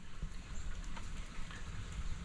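Quiet, steady background hiss with a low rumble underneath and a faint click about a second in.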